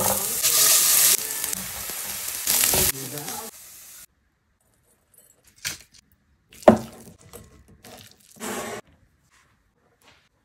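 Diced potatoes dropped into hot oil in a frying pan, sizzling loudly for about three and a half seconds. After that, a few short knocks and scrapes, the sharpest a little past the middle.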